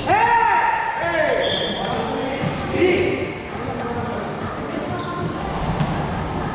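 Volleyball rally in a reverberant gym: players shout calls to one another, the loudest a drawn-out call in the first second, over the knocks of the ball being played and a hollow echo from the hall.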